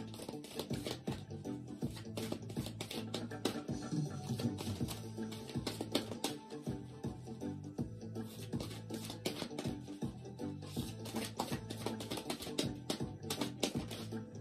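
Background music with steady low sustained tones, over which a deck of oracle cards is shuffled by hand in quick, irregular clicks.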